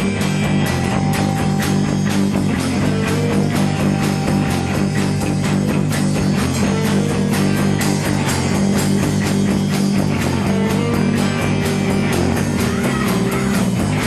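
Live rock band playing loud and steady: electric guitars over a drum kit, with frequent cymbal and drum strokes.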